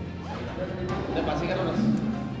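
Speech over background music.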